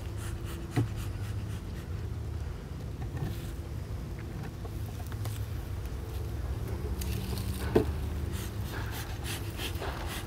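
Beekeeping work at an open hive: two sharp knocks of wooden hive parts being handled, about a second in and near the end, over a low steady hum. Airy puffs of a bee smoker's bellows come in the last few seconds.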